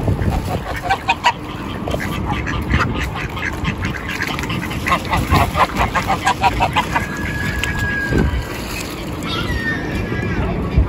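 A flock of mallards and white domestic ducks quacking as they crowd together in the shallows, with a quick run of rapid quacks about halfway through.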